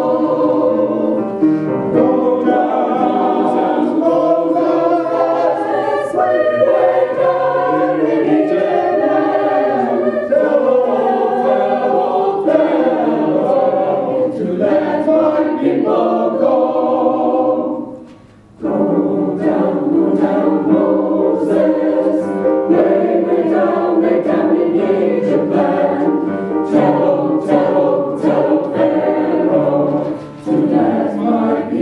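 A mixed choir of men's and women's voices singing in parts, with a short break about eighteen seconds in before the singing resumes.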